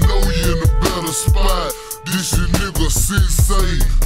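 Chopped-and-screwed Houston hip hop track: slowed, pitched-down rapping over a deep bass line and a steady hi-hat beat.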